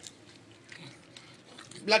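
A Staffordshire bull terrier chewing a chewable supplement tablet, with a few faint, soft clicks. Right at the end a person's voice calls out once, the loudest sound.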